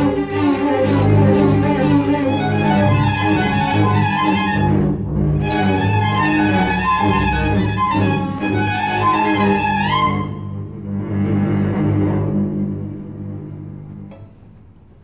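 String orchestra of violins, cellos and double bass playing sustained chords in a contemporary piece, breaking off briefly about five seconds in. Around ten seconds in the upper voices slide upward, then the sound thins and dies away near the end.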